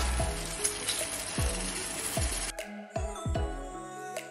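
Onions and garlic frying in butter in a pan, sizzling under background music with falling bass notes. The sizzle cuts off suddenly about two and a half seconds in, leaving only the music.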